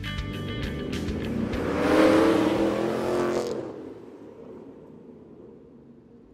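A car engine revving up and passing, mixed with music: it swells to a peak about two seconds in and fades out by about four seconds.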